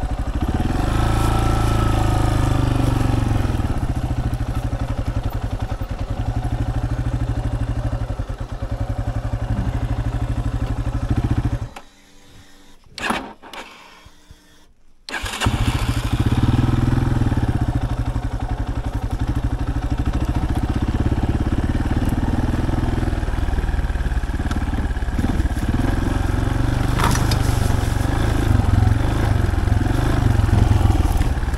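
Yamaha Serow 250's air-cooled single-cylinder engine running steadily while riding a rough dirt track. Near the middle it cuts out for about three seconds, with one brief sound in the gap, then comes back abruptly and runs on.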